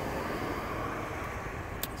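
Steady, even hum inside a car cabin, with a small click near the end.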